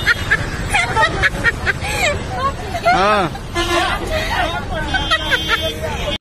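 Several people's voices talking over one another, with background chatter.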